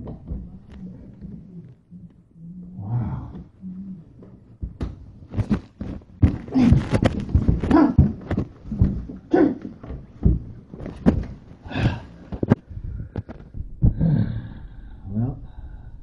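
A man grunting and straining while he shoves and bangs at a ceiling panel overhead, with a run of knocks and thumps that is densest in the middle stretch.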